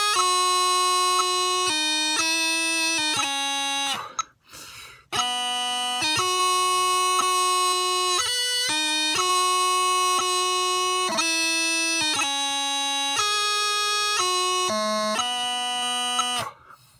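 A bagpipe chanter played on its own, with no drones, carrying a slow reedy melody broken by quick grace notes between the held notes. The tune breaks off for about a second a little after four seconds in, then goes on until it stops at the end.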